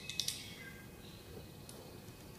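Light clicks of small screws being handled and set by hand into the holes of an acrylic window on a wooden hive body: three quick ones at the start and one more near the end, over faint room noise.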